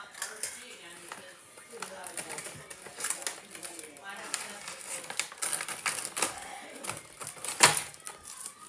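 Plastic candy packets crinkling and rustling in the hands as they are opened and handled: a run of irregular sharp crackles, with the loudest crackle near the end.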